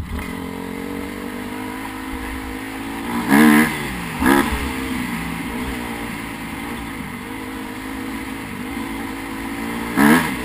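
Dirt bike engine running along a rough trail, with two sharp bursts of throttle about three and a half and four and a half seconds in, the pitch rising and falling each time.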